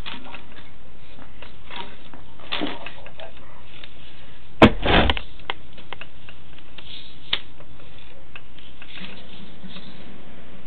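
Sewer inspection camera's push cable being pulled back through the pipe: scattered clicks and rubbing, with a louder knock about halfway through, over a steady hiss.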